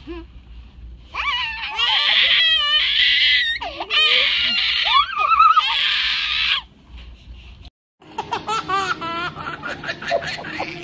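A baby cries and wails loudly in fright, with a child laughing alongside. After a sudden break about eight seconds in, a different baby laughs in short bursts.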